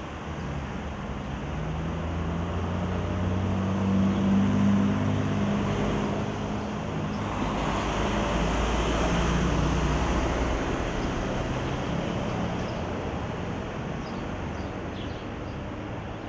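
A motor vehicle driving past. Its engine hum builds over the first few seconds, then the noise of the passing vehicle swells about halfway through and slowly fades away.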